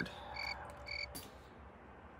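Two short, high, even-pitched chirps half a second apart, then a single sharp click about a second in.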